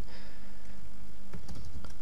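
A few faint computer keyboard keystrokes over a steady low hum.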